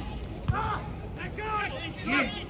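Shouting voices of footballers and spectators at an outdoor match, with a single sharp thud of the ball being struck about half a second in.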